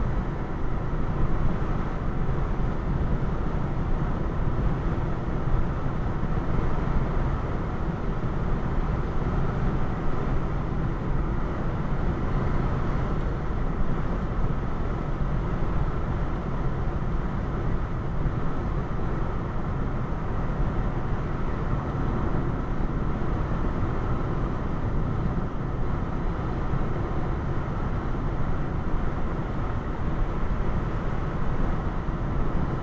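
Steady road noise inside a car cruising at about 60 mph: a low rumble of tyres and engine that holds an even level throughout.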